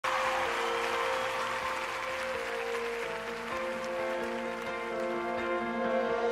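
Live band playing slow, held chords while audience applause in a large arena dies away over the first few seconds.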